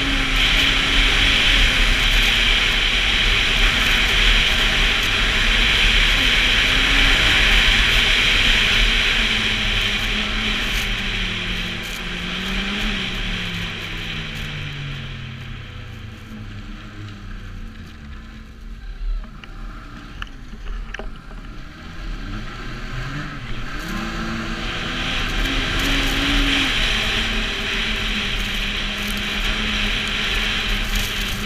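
Snowmobile engine running at speed, heard from the rider's seat. About halfway through its pitch falls and it gets quieter as the sled slows, then it rises again as the sled speeds back up.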